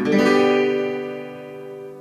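Acoustic guitar strumming a G major chord once, then letting it ring and slowly fade.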